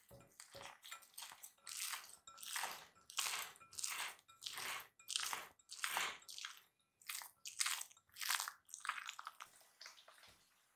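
Risen, olive-oiled bread dough squishing under a hand as it is pressed and turned in a glass mixing bowl: a run of short, wet squishes, about two a second.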